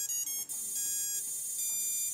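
Electronic beep tones from a drone's brushless ESCs and motors, which restart when BLHeliSuite disconnects from them: a quick run of short stepped tones, then a steady held tone.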